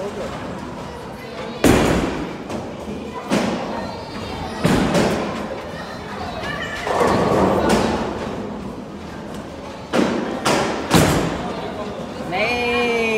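Ten-pin bowling alley: a series of heavy thumps from bowling balls hitting the lanes and striking pins, with a longer clatter about seven seconds in. A last cluster of thumps comes near the end as a ball is bowled down the lane, all echoing in the large hall.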